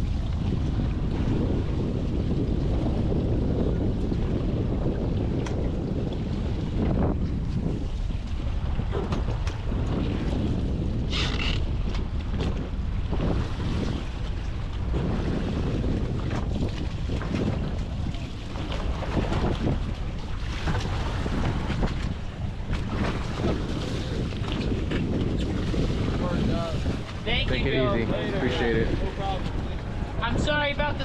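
Wind buffeting the microphone on an open boat at sea, a steady low rumble, with the run of boat engines and water around the hulls underneath.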